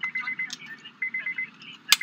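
Electronic beeping: a high tone sounding in rapid dashes, in two bursts of about half a second each, one at the start and one about a second in. A sharp click comes just before the end.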